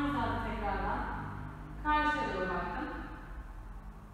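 Speech only: a woman's voice talking in two short phrases, the second starting about two seconds in, over a low steady room hum.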